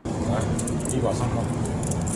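Street noise from live on-scene audio: a steady low rumble of road traffic, with faint men's voices talking under it.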